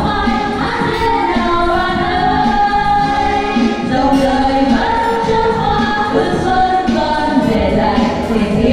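Female vocal group singing together into microphones with music, several voices sustaining long held notes.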